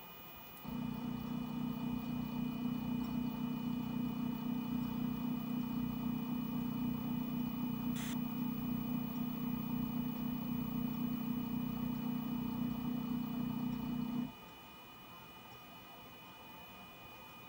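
Shapeoko 3 stepper motors driving an axis slowly during a touch-probe move: a steady low hum that starts about a second in and cuts off suddenly near the end, with one faint click about halfway through.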